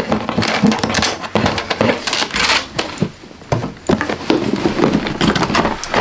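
Cardboard shoebox being handled and opened: irregular taps, scrapes and rustles as the band is slipped off and the lid lifted, with a longer scraping rustle about two and a half seconds in.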